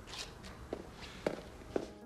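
Faint footsteps of a person walking, about two steps a second.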